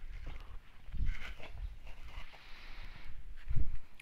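Footsteps and handling noise on the microphone as the camera is carried, irregular low thumps with some rustling, and a heavier thump about three and a half seconds in.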